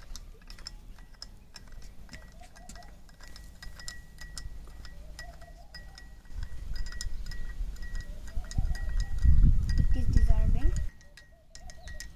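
A metal spoon clinks against the inside of a glass tumbler in many quick, light taps, stirring water to dissolve sugar and salt for lemon juice. From about six seconds in, a loud low rumble builds and peaks, then cuts off about a second before the end.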